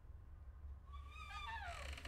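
A faint low hum, then from about a second in a quiet, high, wavering cry that slides downward in pitch, from the horror film's soundtrack.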